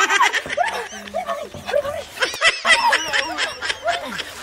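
Rapid high-pitched giggling and snickering: a quick string of short vocal sounds, each rising and falling in pitch.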